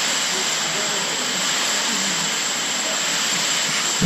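A steady, even hiss with no change in level, with faint voices beneath it.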